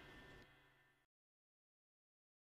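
Near silence: the last faint tail of background music dies away and cuts to dead silence about a second in.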